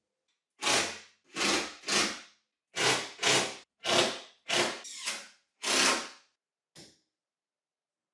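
Cordless drill-driver run in about nine short bursts, each well under a second long, spread over several seconds.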